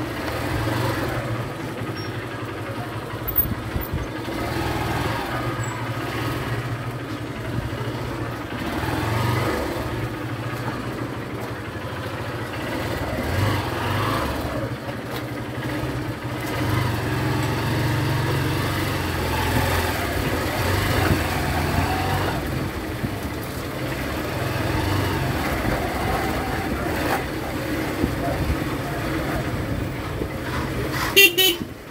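Motorcycle engine running at low speed through the whole stretch, its low hum swelling and easing as the throttle is opened and closed.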